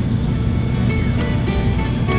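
Steady low engine and road rumble of a bus heard from inside the cabin, with guitar music coming in over it shortly after the start.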